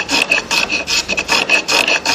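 A 42 mm Japanese kanna hand plane shaving the edge of a wooden board in quick short strokes, about six or seven a second, each a dry rasp of blade on wood.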